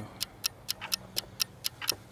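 Clock-ticking sound effect: sharp, evenly spaced ticks, about four a second.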